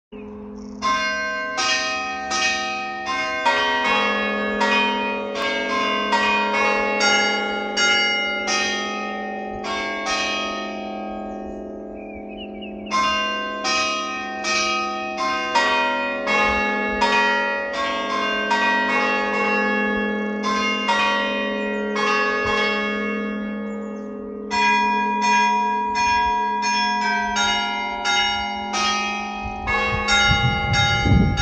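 Church bells ringing a long run of evenly spaced strikes, about three a second, each note left ringing under the next. The ringing lulls for a few seconds about a third of the way in and briefly again near the end.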